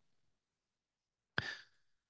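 Near silence, then about one and a half seconds in a single short breath, a sigh into the microphone, that fades quickly.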